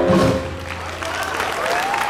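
A jazz big band's final held chord cut off with a short low hit, then the audience starts applauding, with a sliding whoop or two.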